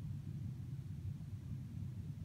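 Low, steady background rumble of room noise, with no distinct event.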